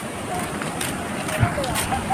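Outdoor background with faint, distant voices and one brief low thump about one and a half seconds in.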